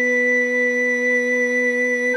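Soprano, tenor and bass recorders holding one steady chord of long, sustained notes without vibrato.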